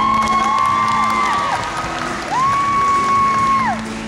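High school chamber choir singing. Two long high held notes, each sliding up into the pitch and falling away at the end, sound over a steady low sustained note.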